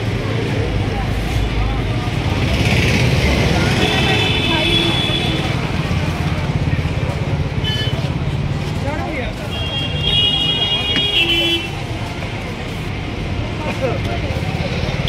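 Road traffic with a vehicle engine running close by. A vehicle horn sounds twice, each time for about a second, about four and ten seconds in.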